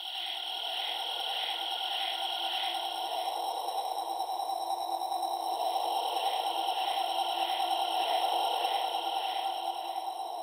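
Eerie ambient intro soundtrack: a steady, hissing drone fades in, with a soft pulsing about three times a second that comes in two runs, one early and one later on.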